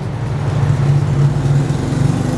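An engine running steadily with a low, even hum.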